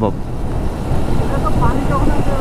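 Motorcycle riding at speed: wind rushing over the microphone, with engine and road noise underneath as a steady low rumble.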